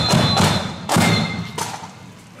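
Marching band drums beating, with a heavy strike about a second in and another smaller one after it. The level then falls away near the end as the playing stops.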